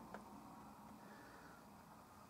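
Near silence: room tone, with one faint click just after the start.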